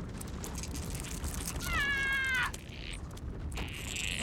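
Cartoon sabre-toothed squirrel giving a single high, strained squeak that falls slightly in pitch and lasts just under a second, about a second and a half in, amid small scratchy clicks as it works at the acorn on the ice.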